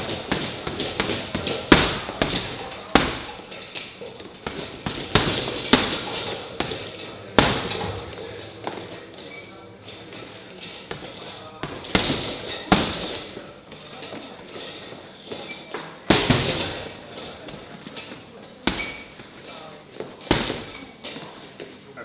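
Punches landing on boxing pads: sharp slaps at irregular spacing, some thrown in quick pairs.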